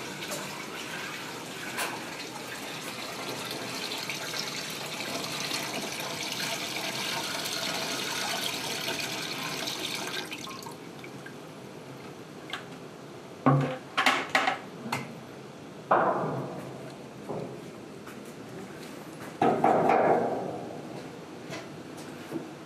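Sap poured by hand from a plastic bucket into a wood-fired maple syrup evaporator, a steady pour lasting about ten seconds that stops suddenly, topping up the pan level as the tank has run dry. After it come a few sharp knocks and two shorter, louder bursts.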